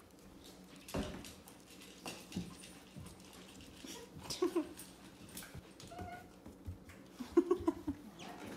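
A red heeler–border collie cross puppy eating from a bowl on a tile floor: irregular small clicks and crunches of food and bowl, with a sharper knock about a second in. Brief faint pitched sounds come about halfway through and again near the end.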